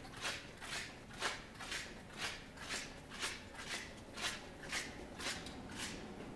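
Footsteps on a hard hallway floor, a person walking at a steady pace of about two steps a second, stopping near the end.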